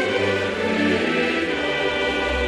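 Background choral music: a choir holding long, sustained chords.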